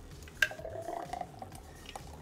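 Thick fruit smoothie pouring from a blender jar into a drinking glass, with a faint rising tone as the glass fills. A single sharp clink comes about half a second in.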